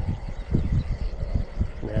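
Wind buffeting the camera's microphone: an uneven low rumble that rises and falls.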